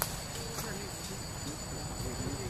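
A steady, high-pitched insect chorus made of several held tones, with faint human voices murmuring underneath.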